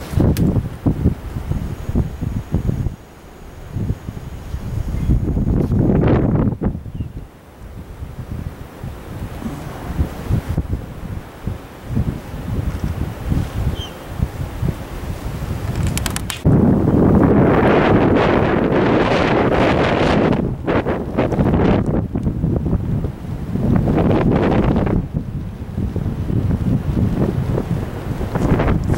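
Gusts of wind buffeting the camera microphone with an uneven low rumble. The strongest, longest gust starts a little past halfway.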